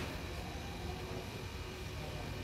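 Steady low background rumble and hiss of the shop, with a brief click at the very start.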